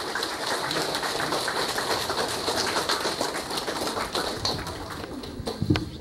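Audience applauding in a hall after an award is announced: dense, steady clapping that thins out slightly near the end.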